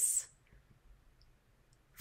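A woman's voice trailing off at the end of a spoken word, then near silence with a few faint, tiny clicks.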